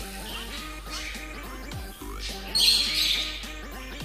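Background music with a steady beat throughout. About two and a half seconds in, a chicken squawks once, loud and high, for under a second.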